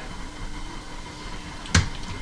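Quiet room tone with a faint steady hum, broken by a single short, sharp knock about three-quarters of the way through.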